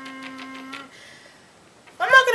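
A drawn-out, level 'umm' hum that stops a little under a second in, with a few light taps of a handboard on a wooden tabletop; the rest is quiet room tone with one more tap near the end.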